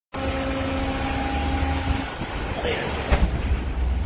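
Low rumble of wind buffeting the microphone, with a steady droning hum for the first two seconds that then drops away. A sudden thump stands out about three seconds in.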